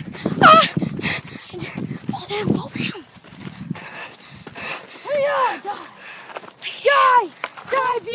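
Children giving several short, high-pitched yells and cries with no clear words. Scuffing and knocking noises come between the cries.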